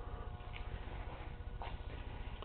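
Quiet garage room tone: a low, even background with a faint steady hum and a few soft clicks of camera handling.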